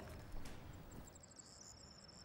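Faint outdoor ambience with a thin, high-pitched chirping that comes in about a second in.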